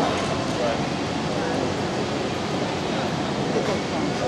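Steady noise of a large indoor arena hall with faint, indistinct voices.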